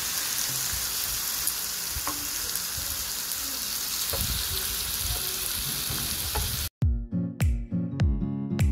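Thin-sliced pork belly sizzling on a hot griddle, a steady hiss with a few faint pops. Near the end the sizzle cuts off suddenly and music with regularly plucked notes begins.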